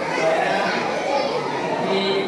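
A man speaking through a hand-held microphone and loudspeaker, with children chattering in the background.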